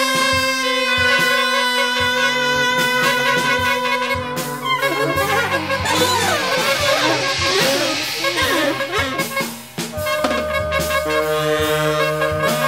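Free jazz ensemble of horns and drums playing: the horns hold long chords, then about five seconds in break into a dense, fast collective flurry. Near the end they return to held chords, with drum strokes throughout.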